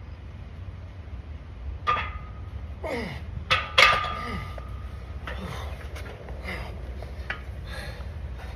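Heavy plate-loaded barbell clanking against the steel hooks of a power rack as it is racked after a 445 lb bench press: a few sharp metal knocks, the loudest about four seconds in with a brief ringing tone. Hard breathing and grunts follow the effort.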